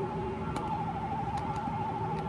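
A steady electronic tone, warbling rapidly up and down around one pitch like a siren held in place, with a fainter lower tone warbling alongside it.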